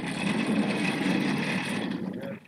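An office chair's casters rolling across a hard floor as the chair is pulled along, a steady grainy rumble.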